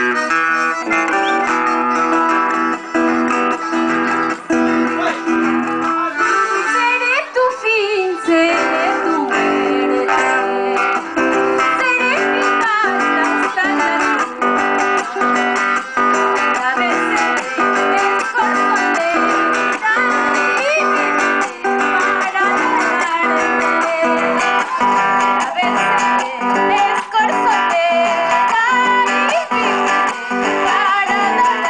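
Live music from a piano accordion and a strummed acoustic guitar, with a woman singing into a microphone over them.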